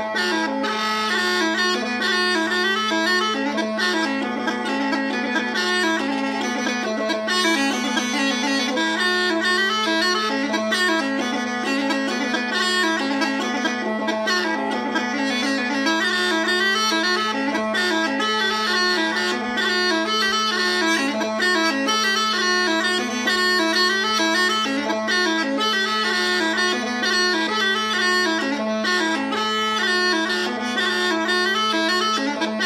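Scottish smallpipes playing a lively jig: a quick, rippling chanter melody over a steady, unbroken drone.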